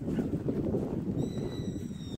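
Footsteps crunching in snow, an irregular low crackle, with a faint high steady tone joining about halfway through.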